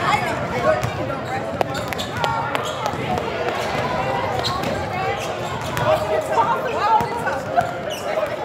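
Voices talking in an echoing gym, with a few scattered sharp knocks of a basketball bounced on the hardwood floor.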